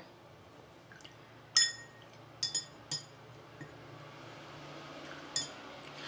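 Paintbrush being rinsed in a glass jar of water: four short ringing clinks of the brush against the glass, with soft swishing of water between them.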